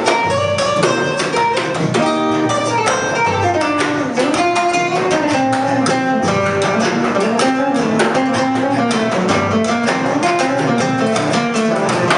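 Live band music without vocals: an acoustic guitar plays a busy melodic line of plucked notes over plucked double bass and drums.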